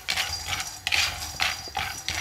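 Raw peanuts being dry-roasted in a nonstick kadai, stirred with a wooden spatula: the nuts rattle and skitter across the pan in short strokes about three times a second.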